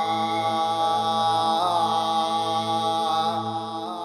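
Devotional singing: a voice holds a long, slightly wavering note over a steady low drone, with a short turn in the melody about one and a half seconds in.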